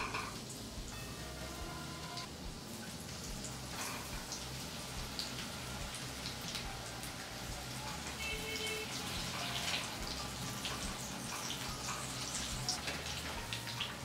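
Batter-coated green chillies (mirch pakora) deep-frying in hot oil in a kadai: a steady crackling sizzle.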